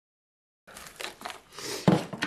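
Plastic freezer packaging rustling and crinkling as frozen, vacuum-sealed meat packages are handled on a table, starting after a brief dead silence.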